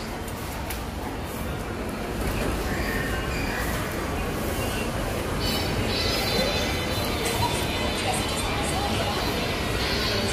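Indoor shopping-mall ambience: a steady background hum with faint background music and distant voices.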